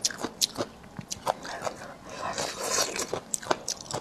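Close-miked chewing of crisp pickled bamboo shoot shreds: a run of short, irregular crunches.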